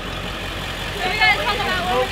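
Converted school bus's engine idling steadily, with people laughing and exclaiming over it from about a second in.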